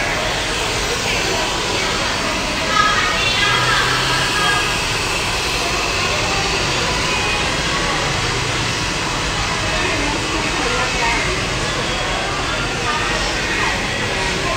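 Hand-held hair dryer blowing steadily, drying a short buzz cut.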